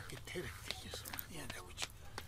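Soft, low speech, close to a murmur, with a few faint clicks.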